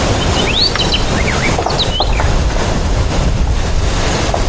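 Several short bird chirps over a loud, steady rushing noise outdoors.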